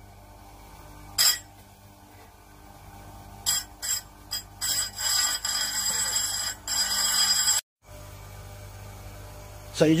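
Bench chainsaw-chain grinder running steadily while a diamond file is pressed against the spinning grinding wheel to dress it into a 120° V profile. The file gives a brief scrape about a second in, then a run of rasping, ringing contacts from about three and a half seconds in that cuts off abruptly before the motor hum carries on alone.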